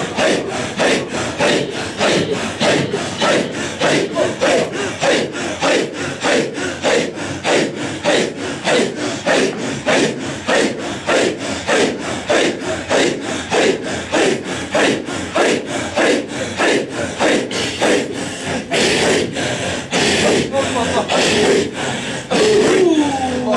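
A circle of men chanting a Sufi hadra dhikr together: a rhythmic, breathy group chant of short, forceful pulses, about two or three a second, each falling in pitch.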